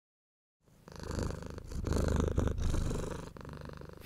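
A domestic cat purring close up. The purr starts about half a second in, swells and eases with its breaths, and fades away near the end.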